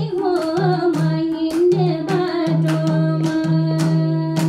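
A woman singing a Nepali folk-style song live into a microphone, her melody wavering and sliding between notes, over regular hand-drum strokes that keep a steady beat.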